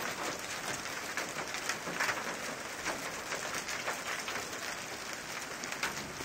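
Hail falling and striking cars and pavement: a dense, steady patter with many sharper, irregular clicks from individual stones. One hit about two seconds in is louder than the rest.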